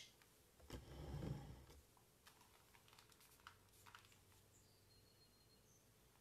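Near silence, with a brief soft handling rumble about a second in, then a few faint light taps of a paintbrush dabbing paint onto a painted wooden dresser.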